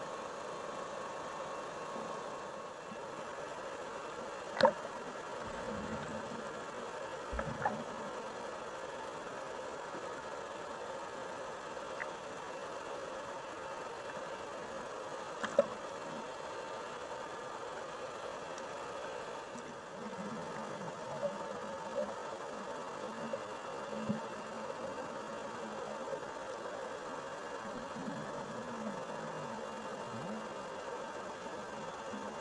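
Underwater recording: a steady buzzing drone throughout, with a few sharp clicks, the loudest about five seconds in and halfway through, and some low gurgling sounds in the second half.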